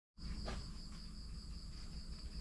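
Evening insect chorus: a continuous high-pitched trill of crickets, with a low rumble beneath it and a light tick about half a second in.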